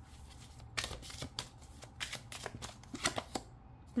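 A deck of oracle cards being shuffled by hand, a quick run of crisp card flicks and slaps starting just under a second in and stopping shortly before the end.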